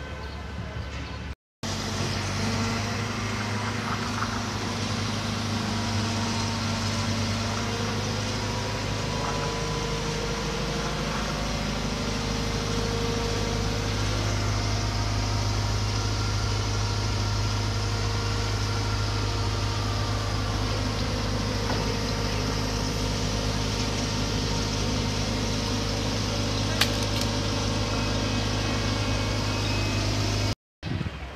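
Heavy diesel engine of construction machinery running steadily at a constant speed, an even low drone. The sound drops out briefly about a second and a half in, and there is one sharp click near the end.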